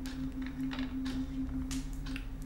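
Tarot cards being handled on a tabletop: a few soft slides and taps as cards are touched and turned, over a steady low hum.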